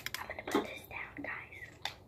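Whispering voice over soft, irregular crackling and clicking from hands working a foamy material up close to the microphone.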